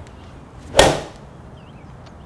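Golf iron striking a range ball off a Ping lie board: one sharp crack a little under a second in, with a short fading tail. The contact is solid and well struck.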